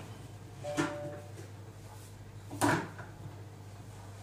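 Lid of a Monsieur Cuisine Connect kitchen robot being unlocked and lifted off its stainless-steel mixing bowl: a light clack with a short ringing tone about a second in, then a louder, sharper clack near three seconds.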